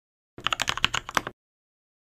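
Fast typing on a computer keyboard: a quick burst of keystrokes lasting about a second.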